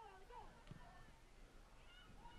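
Faint, distant voices calling out across a soccer field during play, with a faint knock about two-thirds of a second in.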